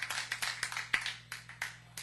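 Scattered applause from a room of people, the claps thinning out and dying away after about a second and a half, over a faint steady hum.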